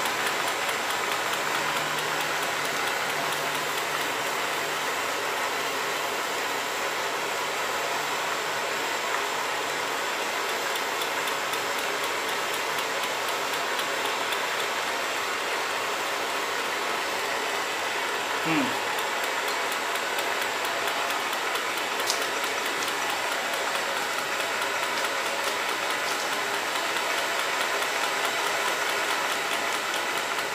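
Blowtorch flame hissing steadily on the hot end of a home-built Stirling engine, with the engine's pistons and linkage running and clattering lightly underneath.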